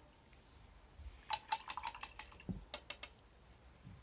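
A quick run of about eight light clicks and taps, close together, with a soft low thump among them.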